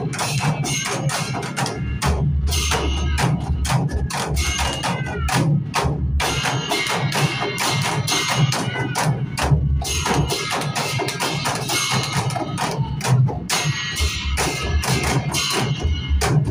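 Several Newari dhime drums, large rope-tensioned double-headed barrel drums, played together by an ensemble in a fast, dense rhythm of strokes.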